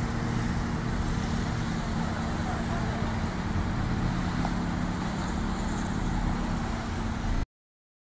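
Steady low rumble of road traffic with a faint hum, heard outdoors through a phone microphone; it cuts off suddenly near the end.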